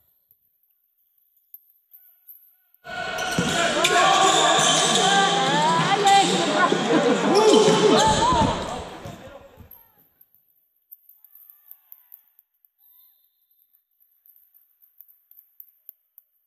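Sounds of a basketball game on a gym court. After about three seconds of near silence comes a six-second stretch of overlapping voices and sneaker squeaks on the hardwood floor. Then it falls back to near silence with a few faint short knocks.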